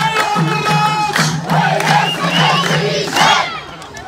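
Dakka Marrakchia ensemble: many men chanting in unison over fast, regular hand-clapping and drum strikes. About a second in, it swells into a loud group shout and cheering, then breaks off sharply near the end.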